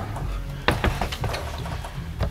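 A few light knocks and clatter as a Stihl MS 180 chainsaw is handled and set down on a table, a cluster of short knocks about a second in, over a low steady hum.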